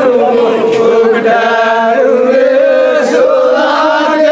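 A crowd singing an Adivasi folk song together in unison, a chant-like melody of long held notes that runs on without a break.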